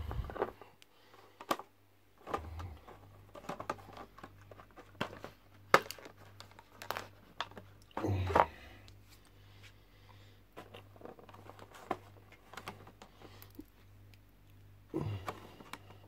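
Clear plastic packaging crinkling as it is handled, with irregular clicks and small knocks of little figures being picked out and set down on a table. There is a louder knock with a dull thud about eight seconds in.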